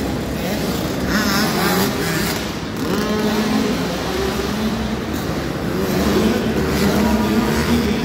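Small youth dirt bike engines revving, their pitch rising and falling as the riders work the throttle around the track.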